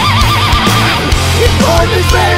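Heavy metal music played loud: a distorted lead guitar holds one note with a wide, fast vibrato for about a second, then plays shorter bent notes over bass and drums.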